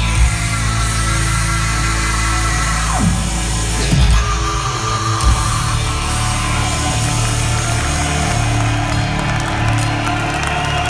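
Heavy metal band with a symphony orchestra playing live, heard loud through a phone microphone in the hall: sustained chords over a steady low end, with sweeps falling in pitch about three and four seconds in.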